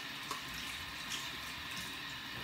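Water running steadily from a bathroom sink tap, an even hiss.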